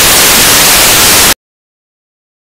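Very loud burst of TV-style white-noise static as the broadcast signal is cut, ending abruptly about a second and a half in.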